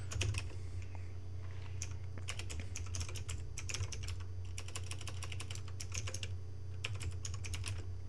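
Computer keyboard typing in short runs of keystrokes with pauses between them, over a steady low hum.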